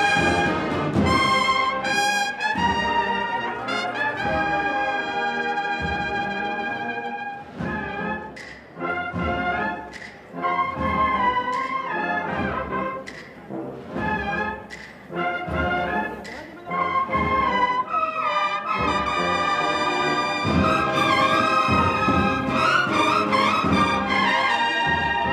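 Brass band playing a slow Holy Week processional march, with held brass chords. About a third of the way in, the music thins into a softer, choppier passage with sharp drum-like strokes, then swells back to full, loud chords near the end.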